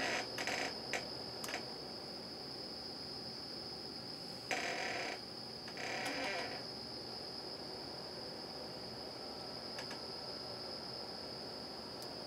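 A steady high-pitched whine that never changes, with a few soft clicks in the first second or so and two brief rustles around the middle as clip leads and wires are handled.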